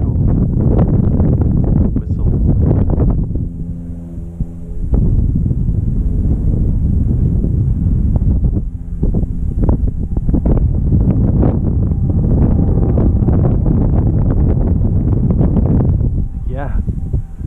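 Strong wind buffeting the microphone, a loud low rumble that rises and falls in gusts. About three seconds in the wind eases for a couple of seconds and a steady hum with several overtones comes through.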